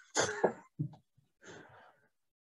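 A person coughing: three short coughs, the first the loudest and the last faint.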